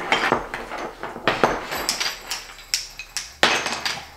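Toy sticks and blocks knocking and clattering together as a baby bangs them, in irregular sharp knocks, the loudest a little before the end.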